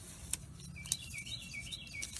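A wild songbird giving a quick run of short, high chirps, starting a little under a second in, with a couple of faint clicks earlier.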